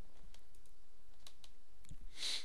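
A few faint, irregular clicks at a computer over a steady low hiss.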